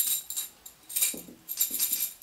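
Small metal shaman's bells (bangul) shaken in short jingling bursts, with a brief lull midway.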